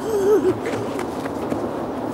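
A short wavering vocal sound at the start, then steady outdoor background noise with faint footfalls on grass as a small child walks up to a football.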